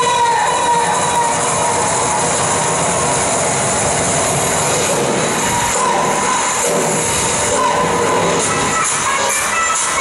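Loud backing music for a dance routine, played over loudspeakers in a sports hall. It is a dense, steady mix with a few held tones.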